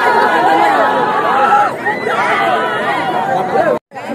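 A dense crowd of many people talking and calling out at once. The sound cuts out for an instant near the end.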